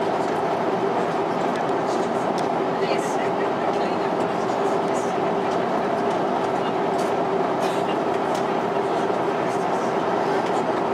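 Steady cabin noise of an Airbus A350-900 in flight, heard from a passenger seat: an even rush of airflow and engine noise with a steady low hum.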